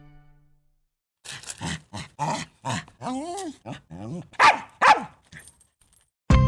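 A small dog barking and yapping: a quick run of about a dozen short barks starting about a second in, with a wavering whine in the middle. The last two barks are the loudest.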